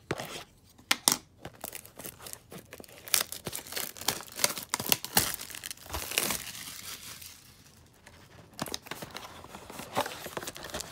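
Clear plastic shrink-wrap being torn and peeled off a cardboard trading-card box, in irregular crinkling and crackling bursts. There is a quieter stretch about seven to eight seconds in.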